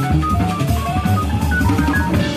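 Live jazz from a piano, double bass and drum kit: quick runs of short notes moving up and down over the bass and the drums' cymbals and kick.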